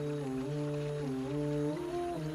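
Background vocal nasheed: a wordless voice humming long held notes that step up and down in pitch, with faint rain sounds behind it.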